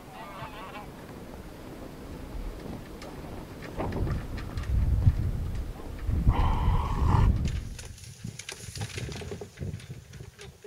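Geese honking in flight: a few wavering calls at the start and a stronger call of about a second around two-thirds of the way through, over a heavy low rumble that is loudest in the middle.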